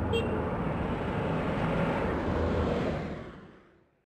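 Steady road-traffic rumble of passing cars that fades out to silence over the last second. A brief high tone sounds just after the start.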